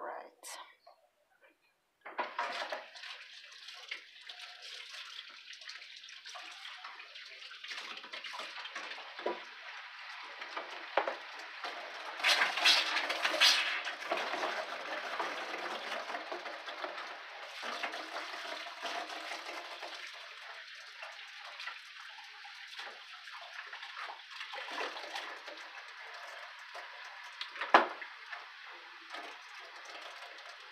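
Steady rushing of running water, starting suddenly a couple of seconds in, growing louder for a moment about twelve seconds in, with a single sharp knock near the end.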